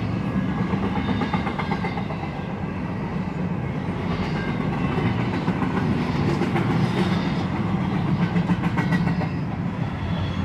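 CSX intermodal freight train cars rolling past at close range: a steady rumble of steel wheels on rail, with frequent clicking as the wheels cross rail joints.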